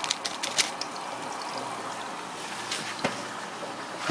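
Steady trickle of aquarium water, with a few sharp clicks in the first second and a couple more near the end.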